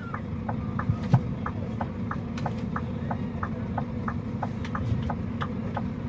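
A car's turn-signal indicator ticking evenly, about three ticks a second, inside the cabin, over a steady low rumble.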